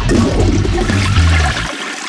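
A toilet flushing: a loud rush of water that dies away near the end.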